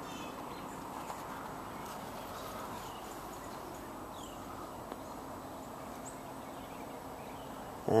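Quiet outdoor background: a steady faint wash of noise beside a wooded lot, with a few faint, brief bird chirps.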